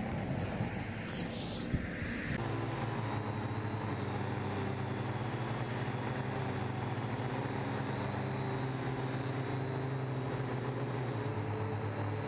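Quiet outdoor noise with a single click for about two seconds. Then a steady hum of several tones sets in: a Syma X8W quadcopter's motors and propellers, recorded by a camera on board the drone.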